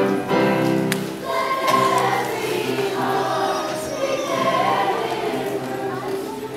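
A youth choir singing in parts: a held chord that moves into shifting melodic lines about a second in.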